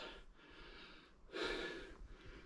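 A man breathing hard, with one audible breath about a second and a half in and faint breath noise around it. He is winded from climbing a steep, sandy slope.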